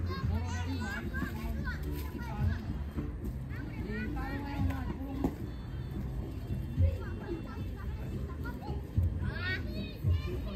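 Children playing, their high voices calling out and chattering, mixed with some adult talk.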